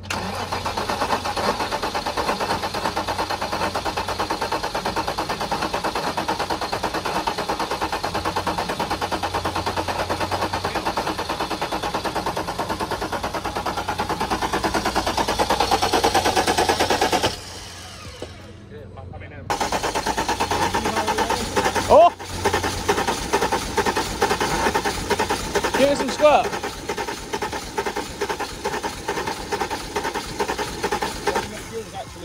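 BMW E34 M5's straight-six engine turning over on the starter in a long, steady attempt to start, cutting out after about seventeen seconds and then cranking again a couple of seconds later. It is struggling to fire on old fuel that has sat in the tank, which the crew call dead fuel.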